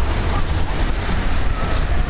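Steady wind rumble on the camera microphone of a moving bicycle, mixed with the running of car traffic alongside.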